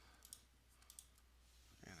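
Near silence: a low steady hum with a few faint, short clicks, as of a computer mouse being clicked.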